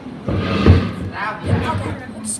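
Voices talking close by, with a single dull thump under them a little under a second in.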